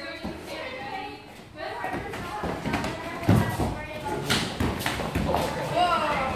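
Sparring karate fighters' feet and strikes thudding on foam mats, with several short thuds and three louder ones in the second half, over people's voices in a large room.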